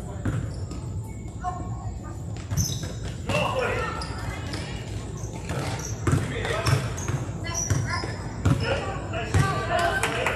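Basketball bouncing on a gym's hard floor: a handful of irregular low thumps, echoing in the large hall, with players' and spectators' voices calling out around it.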